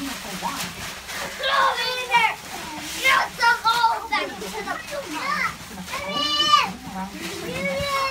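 Young children's voices: high-pitched calls and babble without clear words, over general family chatter.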